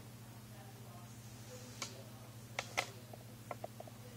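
A steady low hum with a few light, sharp clicks or taps. They begin about two seconds in, come as a close pair, then as a quick run of three or four near the end.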